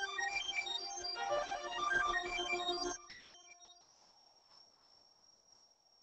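Electronic music track with quick, short synth notes, stopping abruptly about halfway through; after that only a faint steady high whine remains.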